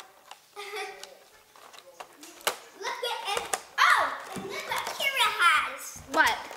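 Children talking and exclaiming in unclear words, with a few sharp clicks as clear plastic toy packaging is handled.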